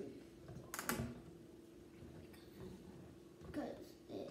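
A plastic dish soap bottle being handled: one sharp click about a second in, then faint small rustles as it is turned over, with a low steady hum in the background.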